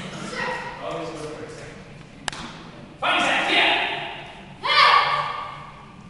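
Two sudden loud taekwondo kiai shouts, about three seconds in and again near the end, each echoing for about a second in a large hall. A single sharp crack comes a little after two seconds.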